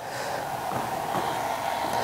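A fan running steadily: an even whirring hiss with a faint high hum, creeping up slightly in level.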